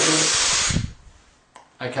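A person drawing a deep breath in through the mouth: a loud, sudden rushing hiss lasting just under a second, the full 'fill up' breath taken in preparation for playing high on the trumpet.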